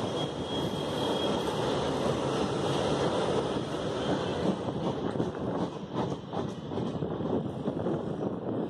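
Loaded bogie flat wagons of a freight train carrying steel rails rolling past: a steady rumble of steel wheels on the track, with rapid wheel clicks growing clearer in the second half as the last wagons and brake van pass.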